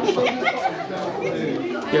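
Background chatter of several people talking at once, with no one voice standing out.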